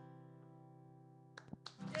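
Acoustic guitar's last strummed chord ringing out and slowly fading at the end of a song, with a few small clicks near the end.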